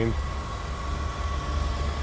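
Steady low background rumble with a faint steady high whine; no distinct event.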